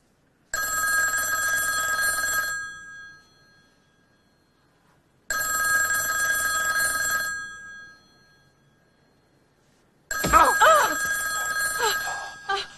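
Telephone ringing: three rings, each about two seconds long and about five seconds apart. A person's voice rises and falls over the third ring, near the end.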